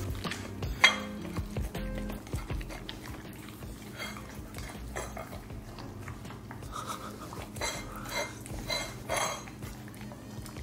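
Ceramic plates clinking and scraping on a tile floor as two Siberian huskies eat raw steak off them and lick them clean, with scattered clinks and one sharp clink about a second in.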